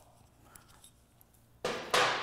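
A brake pad's metal insulator shim being pried off the original pad: near quiet, then a sudden short scrape or snap about a second and a half in that fades over about half a second.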